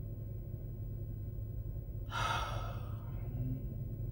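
A woman sighs once, a long breathy exhale about two seconds in that fades away. Under it runs the steady low rumble of a car cabin on the move.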